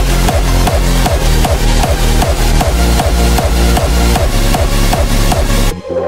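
Electronic dance music with a fast, steady, heavy bass beat. The music cuts out suddenly for an instant near the end, then comes back in.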